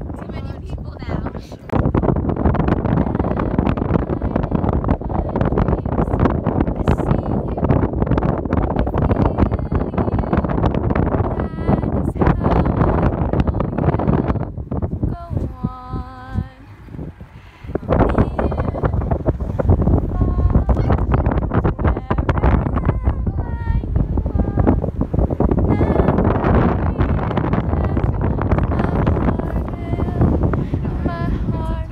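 Strong wind buffeting a phone microphone on the open deck of a moving boat, loud and gusty, easing for a couple of seconds about halfway. A woman's singing voice comes through the wind, clearest in that lull.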